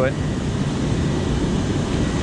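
Water rushing steadily over a low-head dam spillway: a loud, even wash of noise.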